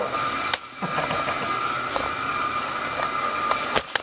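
Steady drone of wood-chip boiler plant machinery with a whine running through it, broken by a few knocks and clicks from the camera being handled, the sharpest near the end.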